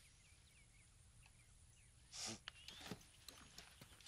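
Faint outdoor ambience with small birds chirping now and then. About halfway through comes a brief soft rush of noise, followed by scattered light clicks.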